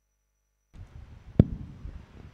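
Dead silence, then the sound feed cuts in abruptly with a low rumbling background noise and a single sharp knock, the loudest thing here, about a second and a half in.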